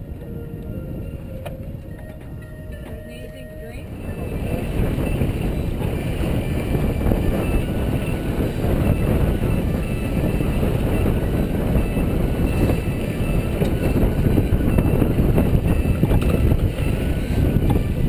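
Wind buffeting the microphone and water rushing past a sailboat under sail. The noise jumps up about four seconds in and stays loud.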